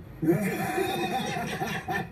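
Several men burst into laughter, a rapid run of high, rising-and-falling laugh bursts that starts about a quarter second in.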